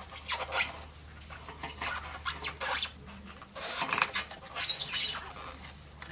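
Front wheel of a Honda CB750 being worked free of the forks by gloved hands: irregular scraping and rubbing of tyre and metal parts in several uneven spells.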